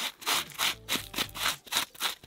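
Gloved hand brushing and scraping dry soil and grit off a shallow bamboo rhizome, in quick repeated strokes about three a second.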